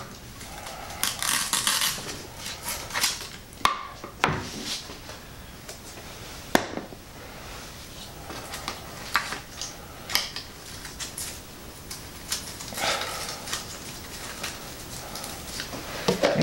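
Hands working in an RC truck's chassis: scattered clicks, scrapes and rustling of plastic parts and wires as the battery adapter and connectors are pulled out and handled, with one sharp click about six and a half seconds in.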